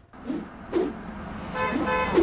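A car horn honks in one steady tone starting about one and a half seconds in, heard as the opening sting of a TV traffic segment, over faint background noise.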